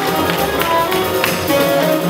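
A jazz quintet playing live: saxophone over piano, double bass and drums, with sharp percussive taps running through it.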